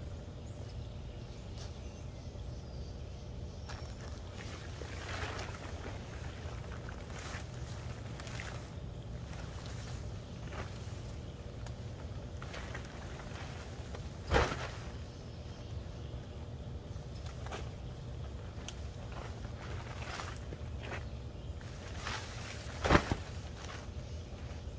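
Pop-up tent being set up: fabric rustling and footsteps, with two sharp snaps, one about midway and one near the end, as the tent's pop-out frame springs into shape. A steady low rumble runs underneath.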